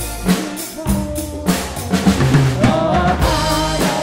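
A band playing music: a drum kit beat under sustained instrumental backing, with a wavering melody line coming in about three seconds in.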